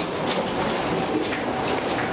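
A cruise ship elevator's steady mechanical rumble with a faint hum, as its doors stand open.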